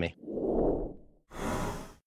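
Whoosh sound effects for an animated transition: a low, swelling whoosh that rises and falls over the first second, then a brighter, hissing whoosh starting about a second and a half in.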